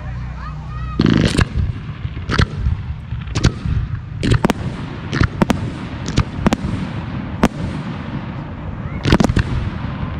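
Daytime aerial fireworks going off: about a dozen sharp bangs at uneven intervals, some in quick pairs and a cluster about a second in and near the end.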